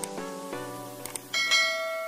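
Bell-like ringing notes of a music track, sounding out one after another. There are faint mouse-click sound effects at the start and about a second in, then a brighter, higher notification-bell chime from about one and a half seconds in.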